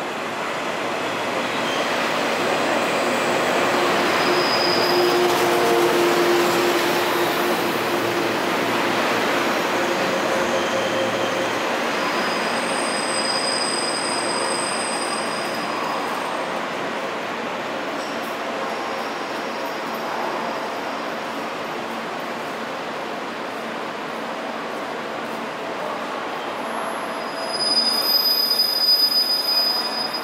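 Kirakira Uetsu, a 485-series-based electric train, rolling slowly into a station platform with steady wheel-on-rail noise that swells during the first few seconds and then eases off. A thin high squeal rises about midway, and near the end a louder, rough squealing sets in as it brakes to a stop.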